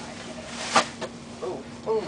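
A single sharp knock about three-quarters of a second in, with brief bits of voices and a steady low hum underneath.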